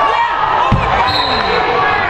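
Spectators and players talking over each other in a gymnasium, with a single low thud a little under a second in and a brief high squeak just after.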